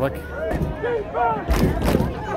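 Distant voices calling out on a football field, then a heavy low thump lasting about half a second near the end.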